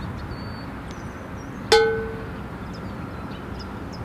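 Steady low background rumble, with a single short ringing ding just under two seconds in that fades quickly.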